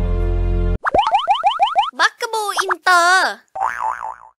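Drama background music cuts off under a second in, replaced by a cartoon-style logo sound effect. First comes a quick run of rising, boing-like sweeps, then wobbly warbling sounds and a short wavering tone near the end.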